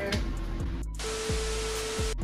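Background music, cut off sharply just before a second in by a burst of TV static hiss with a single steady beep underneath. It is a glitchy TV-screen transition sound effect.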